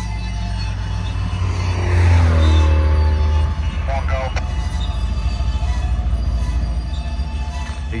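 Freight train rolling slowly past with a steady low rumble, coming almost to a stop. A road vehicle passes close by about two seconds in, the loudest moment, its pitch falling as it goes.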